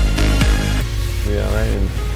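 Electronic dance music with a steady kick-drum beat, about two beats a second. The beat drops out just under a second in, leaving a wavering, bending synth line.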